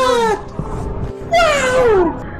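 Two high cries, each falling in pitch and lasting about half a second, one at the start and one just past the middle, over quiet background music.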